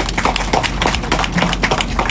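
Crowd applauding, a dense patter of hand claps.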